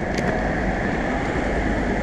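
Steady rolling rumble of skateboard wheels on pavement while riding.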